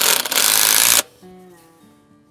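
Cordless driver spinning a wood screw into the end of a wooden board for about a second, then stopping suddenly. The screw's tip has been clipped off, which keeps the wood from splitting. Soft background music continues underneath.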